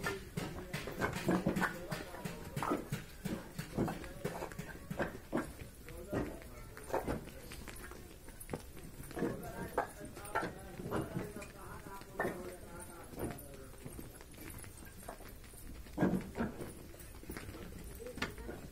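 Fired clay bricks clacking against one another in many sharp, irregular knocks as they are handled and carried, with people's voices calling out at times.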